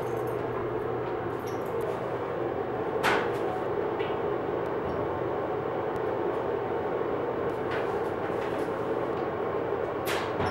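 Steady mechanical hum of a coin laundry room's machines, with a click about three seconds in and a couple of fainter clicks later as clothes are loaded into a top-loading washer.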